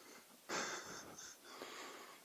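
A person breathing hard: a long breathy exhale about half a second in that fades, followed by softer breaths.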